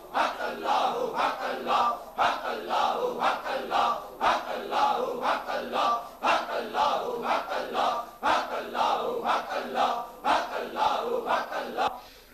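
A group of men chanting zikr together in unison, loudly and rhythmically, one devotional phrase repeated in strong pulses about every two seconds.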